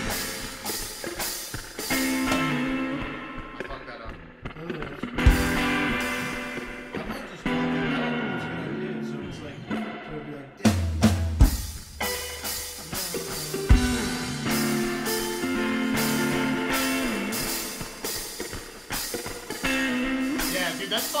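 Guitar strumming chords with a drum kit playing along in a rough rehearsal jam. The drums drop out twice, leaving the guitar chords ringing alone, and come back in with heavy hits.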